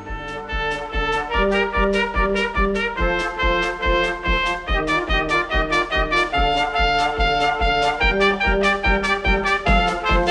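Music led by a trumpet playing a melody over a steady drum beat, which comes in at the start after a held chord.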